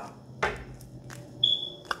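Tarot cards being handled, with a short rustle of cards about half a second in and a few faint clicks. Near the end a short, steady high-pitched tone sounds for about half a second.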